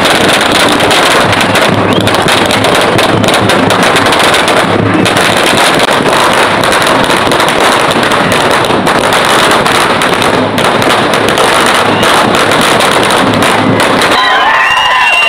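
A long string of firecrackers going off, the bangs coming so fast that they run together into one unbroken, loud rattle.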